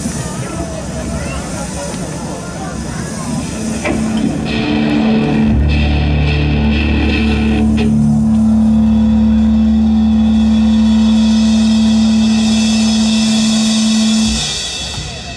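Crowd murmur, then about four seconds in the band's amplified instruments start a held-note intro: one sustained note, joined a second later by a deep bass note, the whole swelling louder and staying steady.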